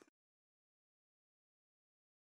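Silence: the audio cuts out at the start and nothing is heard.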